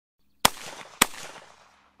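Two 12-gauge shots from a Mossberg Gold Reserve Super Sport over-under shotgun, about half a second apart. Each is a sharp crack followed by a fading echo.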